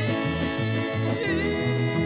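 Bluegrass band playing live, with several voices holding long notes in close harmony around one microphone over banjo and acoustic guitar, and a steady bass line of about two notes a second.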